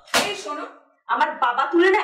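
Raised voices in an argument: a sharp, loud exclamation that fades within half a second, a brief pause, then a young woman shouting.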